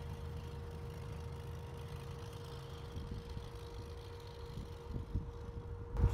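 Ford 8N tractor's four-cylinder engine running as it climbs away up the driveway, heard faintly as a low rumble from a distance.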